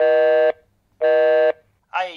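Telephone busy tone: two even, buzzy beeps, each about half a second long with half-second gaps between them. It is the sign that the call is not getting through.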